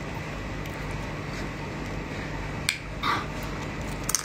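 Eating sounds from chewing and sucking on a piece of shellfish in chili sauce: mostly a steady background hiss, with a sharp click about two and a half seconds in and a short mouth sound just after it.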